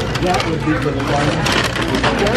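Indistinct voices of people talking, with a short burst of rustling and clattering about one and a half seconds in, fitting a paper takeout bag and a food tray being handled on a table.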